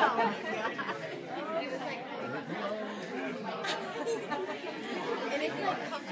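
Dinner guests' chatter: many voices talking at once around the tables, with laughter a few seconds in.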